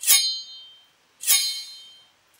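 Sword sound effect played dry, without reverb or delay: a bright, high metallic ring, heard twice about a second apart, each dying away within about a second.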